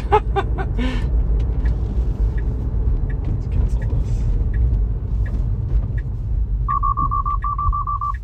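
Tesla's cabin warning chime: a rapid run of short, high beeps in two quick groups near the end, sounding as the car applies corrective steering for a detected road departure. Under it, a steady low road rumble inside the cabin, with laughter about a second in.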